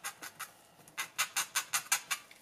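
Short scratchy strokes of a small baking tool dragged across marker-dyed fabric, spreading the wet fabric-marker ink out from the centre. A few light strokes at first, then a quicker, stronger run of about six strokes a second in the second half.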